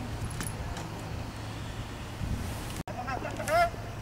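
A vehicle engine running steadily with a low hum. A short, high-pitched voice cuts in about three seconds in.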